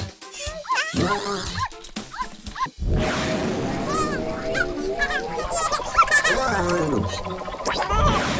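Cartoon soundtrack: short wordless character yips and squeaks for the first few seconds, then music comes in about three seconds in and runs on, rising in pitch in the middle.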